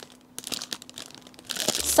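Clear cellophane gift wrap and tissue paper crinkling as a present is unwrapped, in scattered crackles that grow busier near the end.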